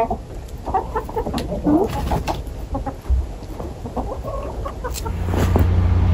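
A flock of backyard hens clucking softly in short, scattered calls close by. Near the end a low steady rumble comes in.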